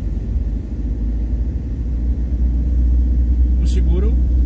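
Low, steady rumble of a school van's engine and tyres on rough asphalt, heard from inside the cabin while driving, getting louder about halfway through.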